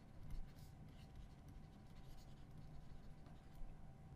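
Faint scratching and tapping of a stylus writing words on a tablet screen.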